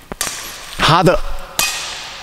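Badminton racket striking a shuttlecock with a sharp crack, followed by a loud shout of "Ha!" from the player, then a second sharp racket-on-shuttle crack that rings on in the hall's echo.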